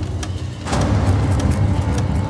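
A carousel slide projector clacks as a slide changes, then a low, steady rumble comes in under it about two-thirds of a second in and holds.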